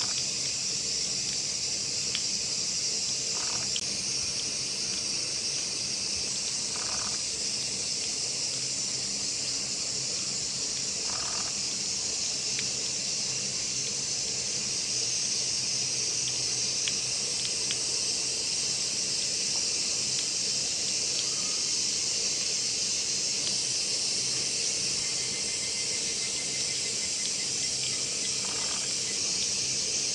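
A steady, high-pitched insect chorus drones without a break, its pitch band shifting slightly a couple of times. A few faint, short, lower sounds come every few seconds over it.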